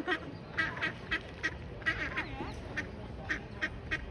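A mother duck and her ducklings calling back and forth: short calls repeating about three times a second, with a few higher peeps that rise and fall in pitch, as the lost ducklings run back to her.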